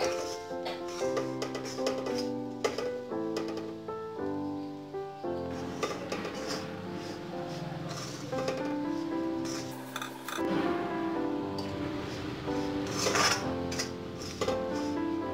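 Background music, a melody of held notes changing about every second, with a metal spoon scraping now and then against an iron kadhai as dry semolina is stirred and roasted; the loudest scrape comes near the end.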